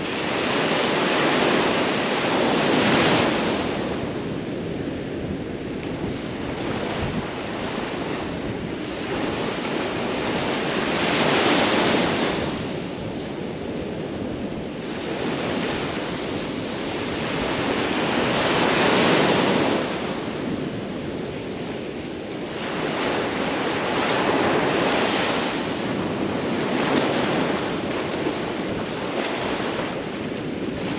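Small ocean waves breaking on a sandy beach, the surf swelling and falling back about every six to eight seconds. Wind rumbles on the microphone underneath.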